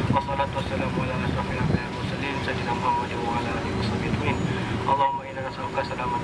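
A man's voice leading a prayer in Arabic through a handheld megaphone, with a steady low background rumble.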